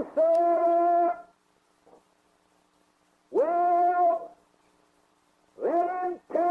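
A man's voice holding long, drawn-out words at a high, steady pitch, chanted rather than spoken. It comes three times, a couple of seconds apart.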